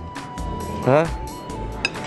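A single short clink of a metal spoon against a ceramic plate near the end, ringing briefly, over background music.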